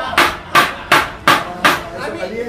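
Wooden kitchen paddle beaten against a hard surface: five sharp knocks in quick succession, a little under three a second.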